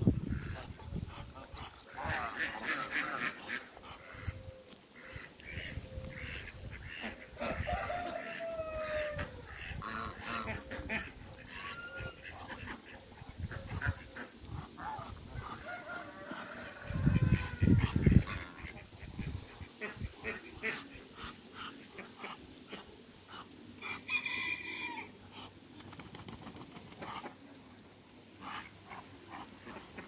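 A flock of African geese and Muscovy ducks calling: scattered honks and shorter gliding calls throughout. A brief loud low rumble comes a little past halfway.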